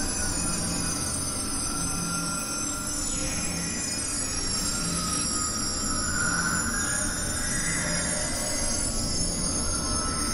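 Layered experimental electronic music: a dense, noisy drone with several high-pitched tones gliding downward over and over, held mid-pitched tones, and a low tone pulsing about once a second.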